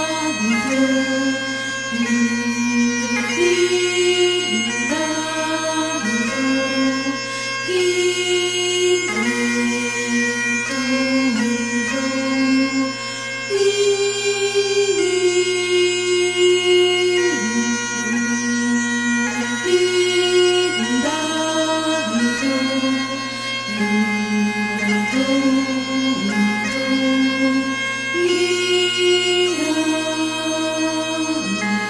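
Great Highland bagpipe playing a slow pibroch over its continuous drone, the chanter holding long notes that change every second or two, each change broken by quick grace-note flicks.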